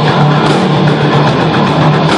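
Rock band playing live: electric guitar and drum kit, loud and dense, with no break.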